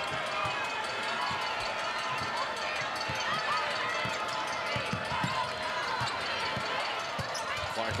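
Live basketball game sound in an arena: a ball dribbled on the hardwood in irregular thuds, sneakers squeaking on the court, and a steady crowd murmur.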